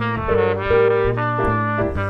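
Jazz trumpet playing a phrase of quick changing notes, with bass and piano accompanying underneath.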